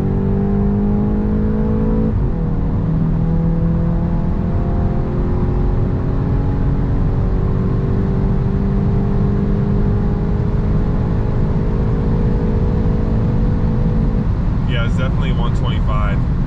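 A 2022 Volkswagen Golf GTI's turbocharged four-cylinder engine pulling hard at full throttle through its 7-speed DSG, heard from inside the cabin over road and tyre noise. About two seconds in, an upshift drops the pitch sharply, and the note then climbs slowly for the rest of the pull. Near the end the engine note drops away as the speed limiter cuts the power at about 125 mph.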